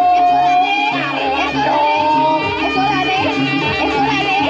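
Live jaranan campursari music: a melody of long held high notes, one at the start and another about halfway through, over a steady repeating low drum and bass pattern.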